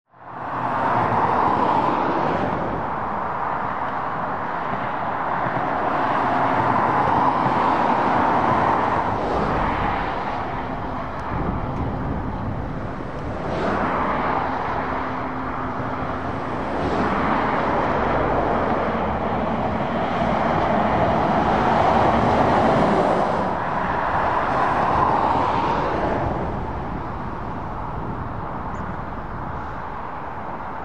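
Road traffic passing on a dual carriageway, heavy lorries and cars going by one after another. Tyre and engine noise swells and fades with each pass, rising from silence in the first second.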